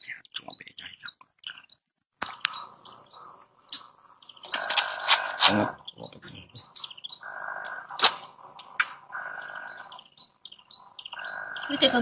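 Baby macaques making repeated short, high squeaks and cries, with a brief near-silent gap early on and louder stretches later in the clip.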